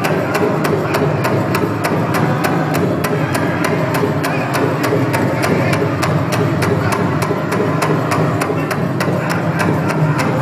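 Powwow drum beaten in a fast, even beat by a group of singers, their high voices singing a fancy-dance song over it.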